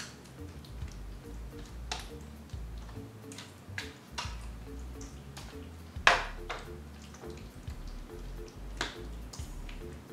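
Soft background music with a repeating pattern of short notes. Over it, a spoon scrapes and taps in a baking pan while a chicken mixture is spread, with a handful of sharp clicks; the loudest comes about six seconds in.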